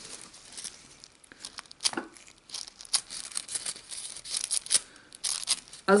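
Thin nail transfer foil crinkling and rustling as it is handled in gloved hands, in short irregular crackles with a few light ticks, busier in the second half.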